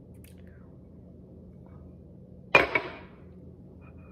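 Two glass tumblers set down on a stone countertop: a sharp glassy clunk about two and a half seconds in, followed at once by a smaller knock.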